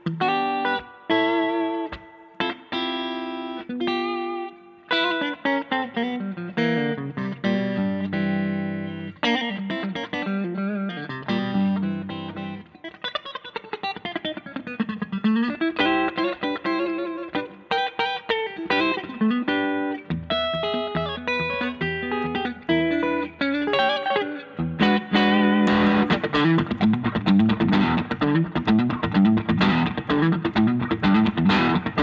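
Friedman Vintage T electric guitar played through an amp with its two P90 pickups in the middle position: picked single notes and chord fragments, with a run that slides down and back up about halfway through. The last few seconds turn to louder, busier strummed chords.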